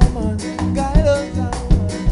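Live reggae band performance: a sung vocal line over bass, guitar and drum kit, with regular drum hits.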